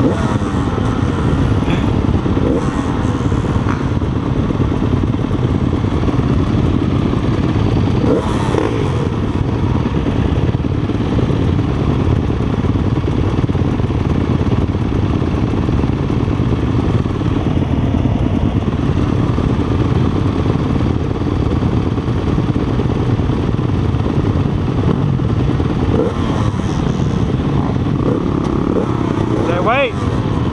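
Several motocross dirt bikes idling together at close range, with the nearest engine (the Yamaha carrying the camera) loudest; a steady running sound with a rev rising near the end.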